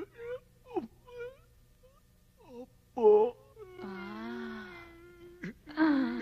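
A person's voice making short cries and then one long drawn-out wail, the loudest cry about three seconds in.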